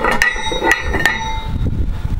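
Knocking on cast-iron barbell weight plates: several sharp metallic knocks in the first second or so, each leaving a ringing tone.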